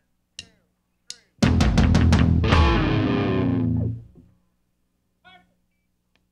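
Electric guitar and drum kit: a few short guitar notes, then about a second and a half in the full band crashes in with a quick run of drum hits under a loud ringing guitar chord. After about two and a half seconds it stops abruptly.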